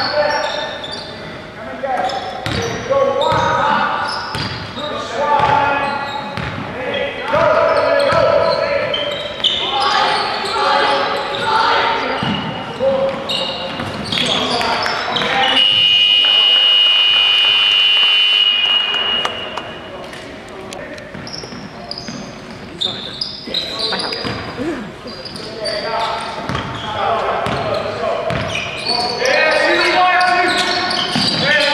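Indoor basketball game in a large sports hall: the ball bouncing on the wooden court and players' voices calling out, echoing. About halfway through, a steady high-pitched tone sounds for roughly three and a half seconds.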